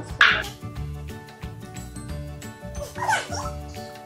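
Background music with a steady, repeating beat. Over it a dog barks once just after the start and gives a short sliding whine about three seconds in.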